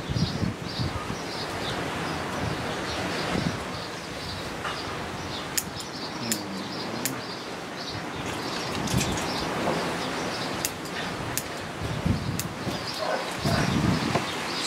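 Bonsai scissors snipping shoots of an elm bonsai, several sharp clicks in the second half among the rustle of leafy twigs being handled. Small birds chirp repeatedly in the background.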